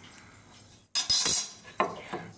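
Quiet at first. About halfway in come clattering and scraping as a wooden pen blank and a metal speed square are handled on a metal bandsaw table, with a sharp knock near the end.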